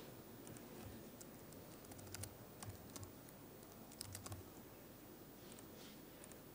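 Faint clicks and taps of typing on a laptop keyboard, coming in small clusters about two seconds in and again about four seconds in.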